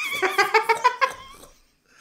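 A man's high-pitched laugh in quick pulses, about six a second, dying away after about a second and a half.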